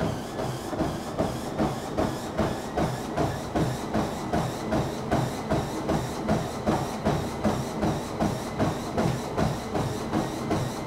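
A runner's footfalls landing rhythmically on the deck of a Sole F89 folding treadmill, about three strides a second, with a faint steady whine underneath.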